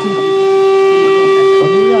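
An electric guitar holds one steady, sustained tone through the amplifier, with a voice faintly under it near the end.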